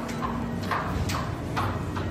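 Footsteps on a hard tiled floor, about two steps a second, over a steady low hum.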